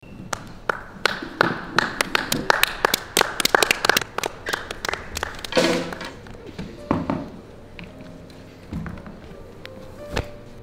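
A few people clapping in quick, uneven claps for about five seconds, with a shout about halfway through, then a single thud about seven seconds in.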